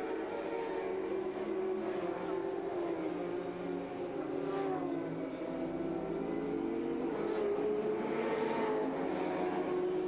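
Racing motorcycle engines running at high revs, the note dipping and rising again as the bikes go through the corners.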